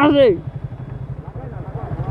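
Motorcycle engine idling at a standstill, a low, rapid, steady pulsing, after a man's voice at the very start.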